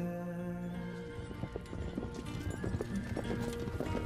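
Hoofbeats of several racehorses galloping on turf, a rapid run of thuds that comes in about a second in, under soft sustained background music.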